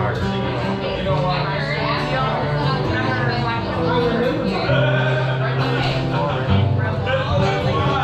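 Live acoustic string music with held low bass notes changing about once a second, under bar-room voices.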